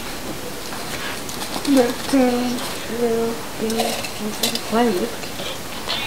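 A woman's voice speaking very slowly, drawing out each word, over a steady background hiss.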